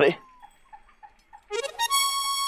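A background-score sound effect in a TV comedy: a reedy, held musical note that starts about one and a half seconds in, rising briefly and then sagging slightly in pitch, after a short spoken "arre" at the start.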